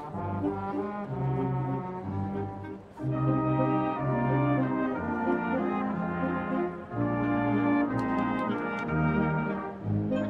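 Military wind band playing, led by trumpets, trombones and saxophones over sustained bass notes, with a brief dip in volume about three seconds in.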